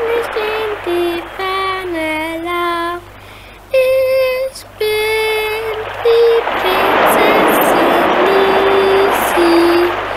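A girl's voice singing a simple, slow little made-up song, one held note after another with brief pauses. In the second half a wash of sea surf swells up behind the singing.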